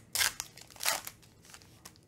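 A foil trading-card pack being torn open by hand: two short crinkling rips about a second apart, then faint rustling.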